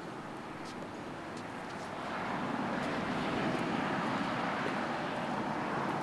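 A passing vehicle: a steady rushing noise that swells about two seconds in and stays up.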